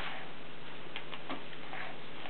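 Steady background hiss with a low hum, and a few faint, soft clicks.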